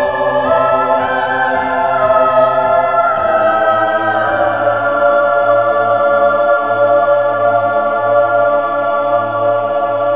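Choral music: a choir singing long held chords over a steady low note.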